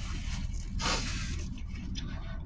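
A short rustling scrape about a second in, over a low steady hum.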